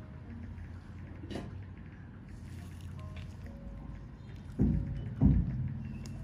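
Steady low background rumble, broken near the end by two loud, dull thumps about half a second apart.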